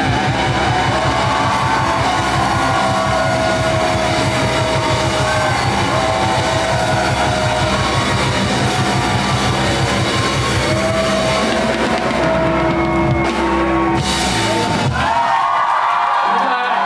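Live rock band playing loud, with electric guitars, a drum kit and a singer on a microphone. The drums and bass stop about a second before the end as the song finishes.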